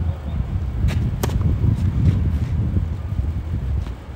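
Gusty wind buffeting the microphone with a loud, fluctuating rumble. A few sharp taps of a tennis ball sound through it, the strongest about a second in.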